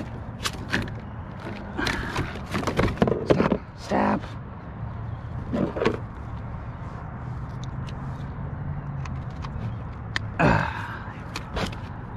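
Scattered knocks, clicks and rattles of a freshly landed sheepshead being handled in a plastic fishing kayak, most of them in the first few seconds.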